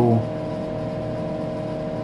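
Steady machine whir and hum with several fixed tones, the running Tektronix 4054A computer's cooling fans and power supply.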